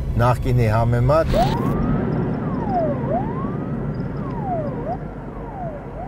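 A man speaks briefly; then, about a second and a half in, a siren starts wailing, its pitch rising and falling about every second and a half and slowly getting quieter.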